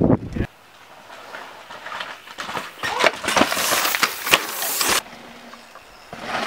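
A downhill mountain bike passing close on a loose, rocky dirt trail: tyres hissing and skidding through gravel and dust, with the clatter of the bike over rocks. It builds to its loudest between about three and five seconds in, then cuts off suddenly.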